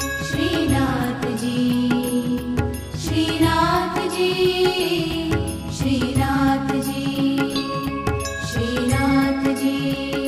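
Haveli sangeet devotional bhajan music: a melody moving over sustained drone notes, with a steady percussion beat.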